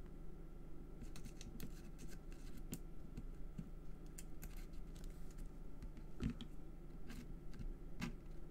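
Faint, scattered small clicks and taps of paper die-cut leaves and a hand tool being handled and pressed against a card stock base.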